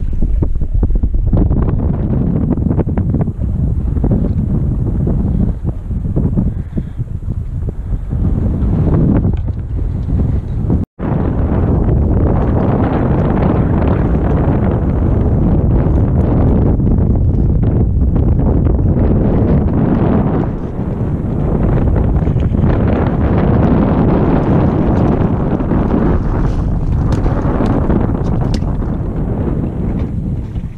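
Wind buffeting the camera microphone in a loud, continuous rumble over an open boat on choppy water. The sound cuts out completely for an instant about eleven seconds in.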